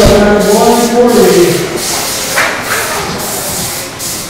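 A man's voice over a public-address system, drawn out on held notes for the first second and a half, echoing in a large hall. A short hiss follows about two and a half seconds in.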